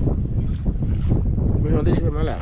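Wind buffeting the microphone aboard a small fishing boat at sea, a steady low rumble, with a man's voice briefly near the end.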